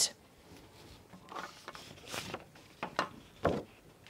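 Paper letter cards being taken down and put up on a whiteboard: a string of short rustles and soft taps.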